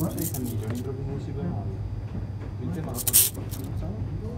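Indistinct voices talking, with a brief sharp hiss-like burst about three seconds in that stands out as the loudest moment.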